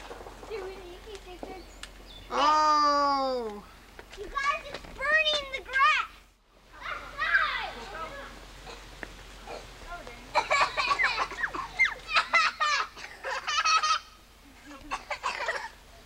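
Young children's voices: a long, loud squeal falling in pitch about two and a half seconds in, then shorter wavering cries and quick excited chatter. The sound drops out completely for a moment about six seconds in.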